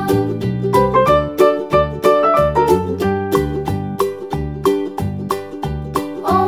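Upbeat background music: a plucked-string melody over a steady beat.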